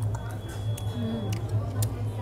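Restaurant dining-room sound: a steady low hum under four or five sharp, irregular clicks of cutlery against plates, with faint voices in the background.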